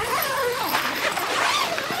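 Zipper being run along the door panel of a car awning room, and the stiff blackout fabric rustling and crinkling as the panel is pulled down.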